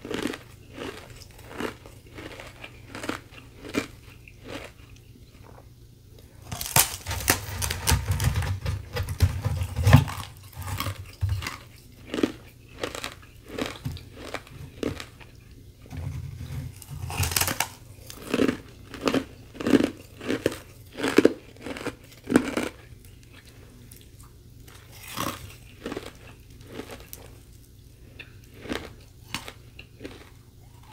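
Close-up biting and chewing of a thin sheet of carbonated ice coated in powdery frost: crisp crunches throughout, with two long runs of dense crunching, then a string of steady chews about one and a half a second.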